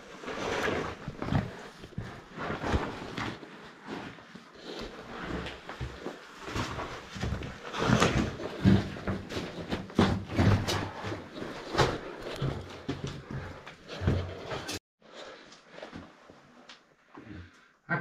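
Someone scrambling over loose chalk rubble in a narrow brick tunnel: irregular crunching, scraping and knocking, loudest in the middle. The sound cuts out briefly about fifteen seconds in, and quieter shuffling follows.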